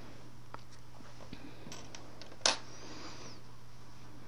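Scissors snipping a yarn end: one short sharp snip about two and a half seconds in, with a few faint handling ticks before it, over a steady low hum.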